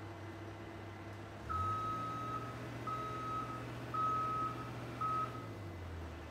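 A construction machine's motion warning alarm beeps four times, about a second apart, starting about a second and a half in. A diesel engine runs underneath and picks up as the beeping starts.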